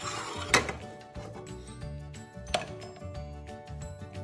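Background music with a steady beat, over which a spatula scrapes and knocks sharply against a frying pan twice, about half a second and two and a half seconds in, while scrambled eggs are served onto a plate.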